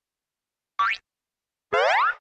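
Two cartoon boing-like sound effects, each a quick upward pitch glide: a short one about three-quarters of a second in, then a longer one starting with a click near the end.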